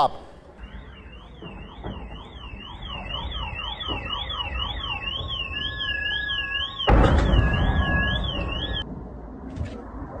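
An electronic siren warbling up and down about twice a second. A loud, rough burst of noise comes about seven seconds in, and the siren stops shortly before the end.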